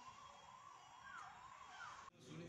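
Near silence, with a faint tone that glides up and down several times.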